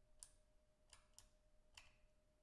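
Near silence with four faint computer keyboard clicks, spaced irregularly.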